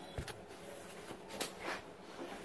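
A few faint knocks and light clinks of metal being handled: two about a quarter second in and two more in the second half.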